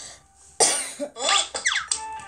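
A child coughing in several short, sudden bursts, starting about half a second in.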